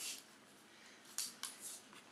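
A brown bear cub nuzzling and mouthing at a person's trouser leg: a few faint, short rustling noises, one at the start and a small cluster in the second half.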